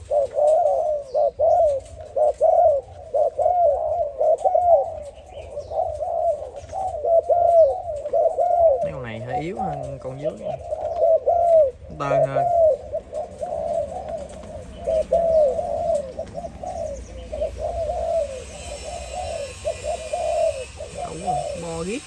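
Several caged Malaysian-strain spotted doves cooing, short arched coos following one another closely and overlapping throughout; a few deeper notes come in briefly around the middle.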